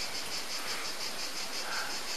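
Insects chirping high and steadily, about six or seven even pulses a second, over a faint background hiss.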